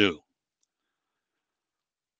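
A man's voice finishing a word, then near silence.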